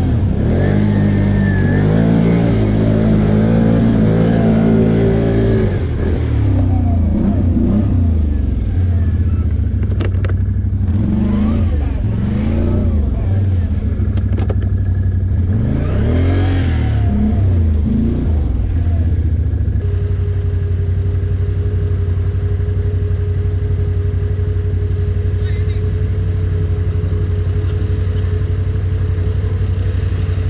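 ATV engines running through mud, the revs rising and falling several times, then running more steadily for the last third.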